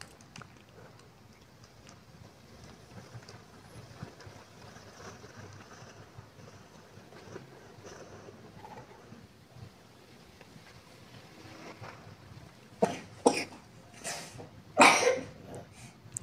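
Faint frying and the stirring of a wooden spatula through yogurt and spice paste in a frying pan, then three short, sharp, loud sounds near the end.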